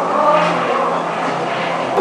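Rough, droning electronic ambient sound texture of a sound installation: a steady low hum under several wavering tones.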